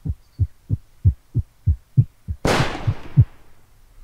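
A single rifle shot about two and a half seconds in, its report trailing off over most of a second. Under it runs a steady string of low thumps, about three a second.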